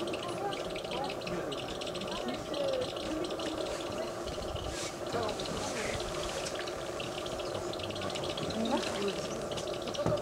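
Background chatter of several people's voices, overlapping and with no clear words, and a rapid high-pitched rattling above them.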